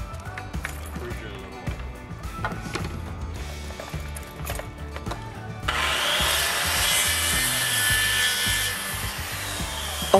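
Circular saw cutting through a pressure-treated board. It starts about halfway through and keeps cutting, over background music with a steady beat.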